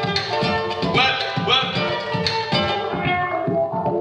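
Live-looped song playing back from a loop station: stacked looped layers of beatbox percussion and plucked bass notes over a regular beat. Over the last second the upper layers thin out, leading into a beat drop.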